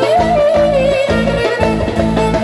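Clarinet playing a live Balkan-style melody, swooping up into a long held note that bends slowly downward, over a steady rhythmic accompaniment.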